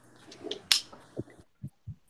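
Desk handling noise on a call microphone: a few light clicks, one sharp click about two-thirds of a second in, then three short, soft low thumps near the end.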